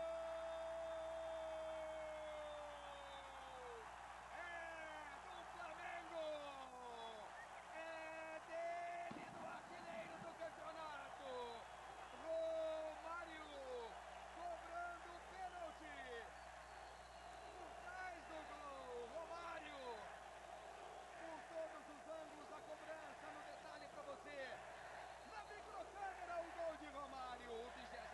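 Brazilian TV football commentator's long drawn-out "gol" call, held on one note for about four seconds before falling away, followed by short shouted calls, over a stadium crowd's steady cheering.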